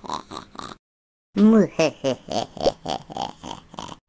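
A laughter sound clip over the meme card: rapid pulsing laughter that stops for about half a second a second in, then plays again.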